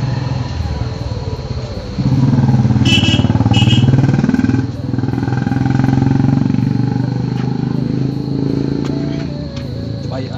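A motorcycle engine running close by. It comes in suddenly about two seconds in, is loudest for the next few seconds, then carries on a little quieter with its pitch rising and falling. Two short high beeps sound about three seconds in.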